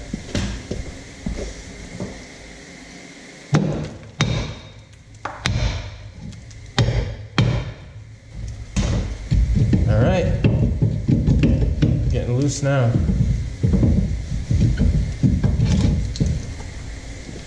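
A rusted rear brake drum is struck with a hammer to free it: a series of about seven sharp metal knocks over five seconds. Then the seized drum is rocked and twisted by hand, and rusty metal grinds and scrapes as it hangs up on the hub.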